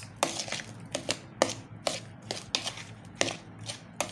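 A metal spoon stirring chopped tomato and onion in a plastic bowl, with irregular scrapes and clicks of the spoon against the bowl, about three a second.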